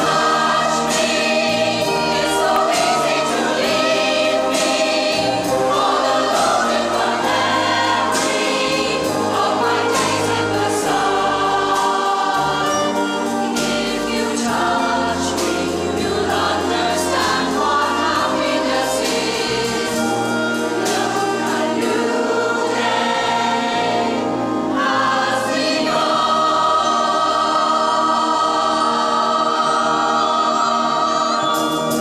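A choir singing with a wind band of brass, saxophones and clarinets accompanying, playing continuously throughout.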